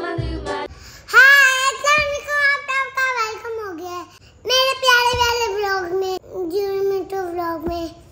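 A young girl singing unaccompanied in a high voice, two long phrases with a short breath between them. The tail of a bouncy music track with a low beat plays for the first moment before she starts.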